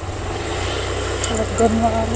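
A motorbike engine running steadily with a low pulsing rumble while riding, and a person's voice coming in about halfway through.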